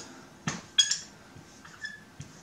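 Dry-erase marker squeaking on a whiteboard as short arrow strokes are drawn: three brief high squeaks, about half a second in, just under a second in and near the end.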